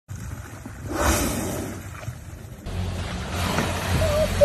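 Low rumble of wind and water around a small boat, with a short whooshing blow from a whale surfacing alongside about a second in. The sound changes abruptly a little past halfway, at a cut, to a steadier rumble with a low hum.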